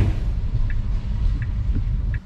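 Low, steady rumble of a car heard from inside the cabin, the engine running, with three faint short ticks partway through.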